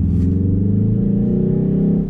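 Ford Focus ST's 2.0-litre four-cylinder diesel accelerating, heard in the cabin with its note boosted by synthetic engine sound played through the car's speakers. The pitch climbs for about a second and a half, then eases.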